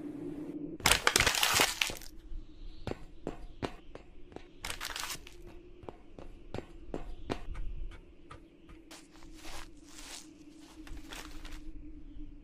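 A steady low hum under a loud crackling burst about a second in, followed by irregular sharp clicks and short crackles.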